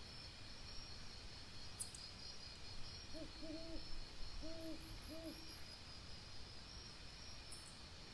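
A night bird giving a run of short, low hoots in two quick groups, starting about three seconds in and lasting some two seconds, over a steady high-pitched background hum.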